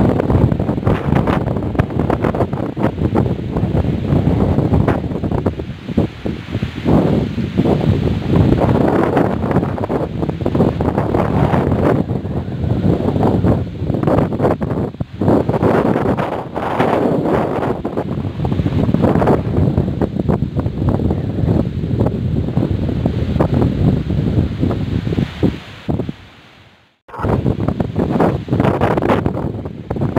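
Storm wind gusting against the phone's microphone, a loud, low buffeting noise that swells and eases. It cuts out for a moment about three seconds before the end.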